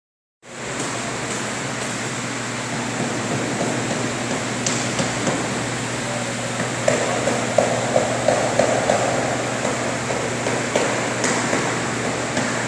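Steady machine hum and hiss, with a few light clicks scattered through the second half.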